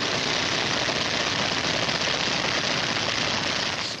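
Great Lakes trainer biplane's piston engine and propeller running steadily during aerobatics, a dense, unbroken drone.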